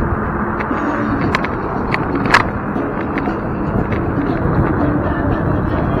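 Steady wind and road noise from a low-mounted camera on a moving electric scooter, with scattered rattles and knocks as it rolls over the pavement, the sharpest about two seconds in.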